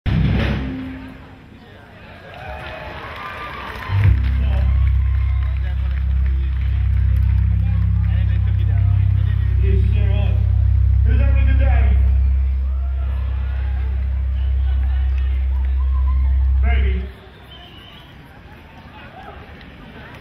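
Outdoor concert sound from a stage PA: a deep, steady bass sound comes in suddenly about four seconds in, shifts level a few times, and cuts off suddenly near the end, with crowd chatter throughout.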